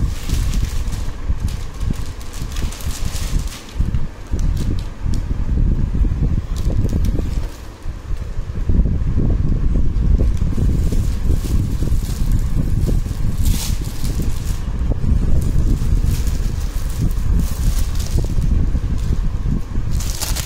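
Steady low rumble of air noise and handling on a phone's microphone, with scattered crinkles of clear plastic garment packaging, most noticeable about two-thirds of the way through and near the end.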